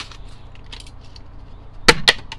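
Faint crinkling of a cardboard blister wrapper being peeled off a diecast car, then a loud, sharp accidental knock near the end.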